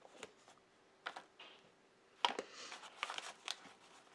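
Paper pages of a folded book being handled: a few light taps, then from about halfway a stretch of rustling and small clicks as the book is lifted and its pages shifted.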